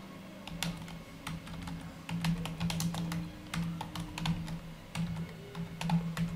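Typing on a computer keyboard: irregular key clicks throughout as a short layer name is typed. A low steady hum sits underneath.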